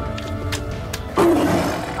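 A big cat roars once, loud and short, about a second in, over background music.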